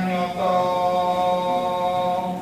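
A man singing a Javanese tembang solo and unaccompanied through a microphone. He holds one long steady note from about half a second in, after a brief break.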